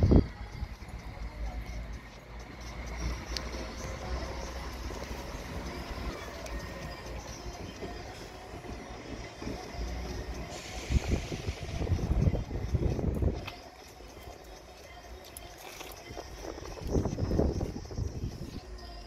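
Low, steady vehicle rumble heard from inside a car cabin beside railway tracks, with louder surges of rumbling around the middle and again near the end.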